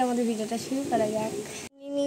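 A young girl's voice, some notes drawn out, then a sudden cut to a brief silence before another voice begins near the end.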